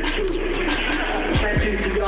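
Hip-hop backing beat played loud through a venue PA with no rapping over it: deep kick drums that drop in pitch, hitting about once or twice a second, under a wavering synth line.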